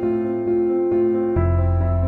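Instrumental background music with slow, sustained chords; a deep bass note comes in about one and a half seconds in.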